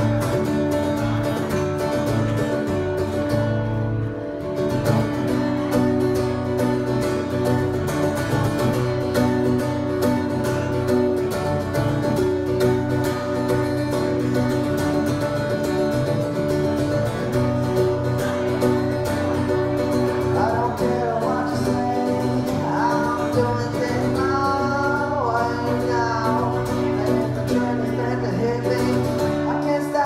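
Steel-string acoustic guitar strummed and played live in an instrumental passage of a solo singer-songwriter's song, with a brief softer moment about four seconds in.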